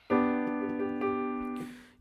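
One G-major chord in first inversion (B–D–G, G on top) struck once on a digital piano. It is held for about a second and a half, fading slowly, then released.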